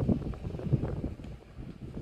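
Low, gusty rumble of wind buffeting the microphone, starting abruptly and easing off after about a second and a half.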